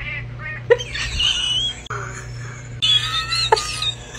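A ginger cat making several short vocal sounds close to the microphone, with a wavering call about a second in.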